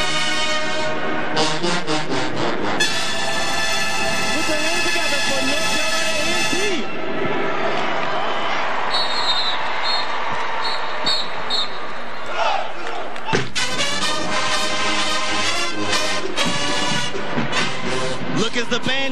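A large college marching band playing in a domed stadium: the brass holds long chords, eases into a looser, quieter stretch, and about two-thirds of the way through breaks into a fast, punchy rhythmic passage.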